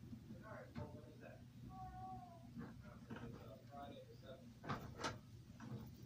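Light plastic clicks and snaps as the posts and elastic ropes of a toy wrestling ring are handled, the two sharpest about five seconds in. About two seconds in comes a brief, high, meow-like pitched call.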